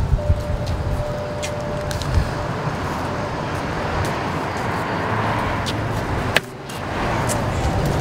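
Steady road-traffic noise with a few faint clicks, dipping briefly about six and a half seconds in.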